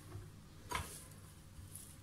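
A single light knock as an empty plastic blender cup is handled, about three-quarters of a second in, in an otherwise faint room.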